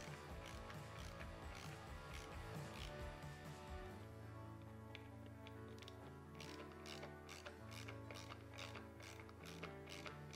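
Faint background music, with the light clicking of a hand ratchet driver as it runs Torx bolts down snug on a motorcycle cam plate's chain tensioner. The clicks come steadily, about three a second, from about halfway through.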